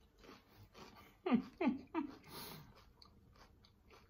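Close-up chewing and crunching of a mouthful of homemade Cajun Sriracha chips, with small crackles and a brief crunchy patch just after the middle. Three short, falling 'mm' hums come in quick succession about a second and a half in.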